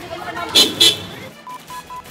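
Voices shouting in a commotion, with two loud, sharp cries about half a second in, then three short, even beeps near the end.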